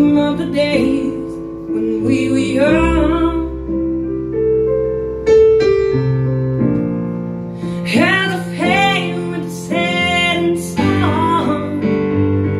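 A woman singing a blues song live over sustained keyboard chords that she plays herself; her sung phrases carry vibrato and come in short lines with pauses between them, while the chords ring on through the gaps.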